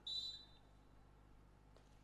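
A short, high whistle blast lasting about half a second right at the start, typical of a beach volleyball referee's whistle between rallies, followed by faint court ambience.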